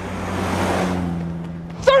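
A car driving past on the street, its noise swelling to a peak about halfway through and fading away, over a steady low hum.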